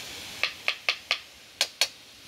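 Metal spoon clinking against the side of a metal wok as food is stirred, six short sharp clicks over a faint frying hiss.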